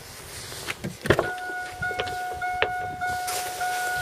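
A truck door on a 1999 Chevrolet Silverado unlatches with a sharp click about a second in. A steady electronic warning chime then starts and keeps sounding in short repeated pulses, set off by the open door.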